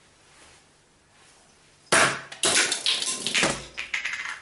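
Two dropped globes, a light hollow plastic one and a heavy metal-filled one, hit the floor about two seconds in with a sharp clatter. A second strong knock follows half a second later, then they bounce and rattle for about a second and a half.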